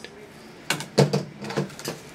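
A stiff green foam round being handled and set down on a folding table: a short run of soft knocks and scrapes, the loudest about halfway through.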